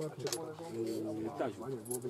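Men's voices: conversational Polish speech, several short utterances of "no".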